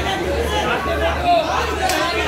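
Overlapping chatter of several voices with no clear words, over a steady low hum, with a single sharp click near the end.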